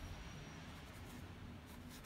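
Ink brush rubbing across paper in several short, faint strokes, over a low steady hum.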